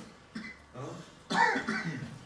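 A person clearing their throat and then coughing, the cough the loudest sound, about one and a half seconds in.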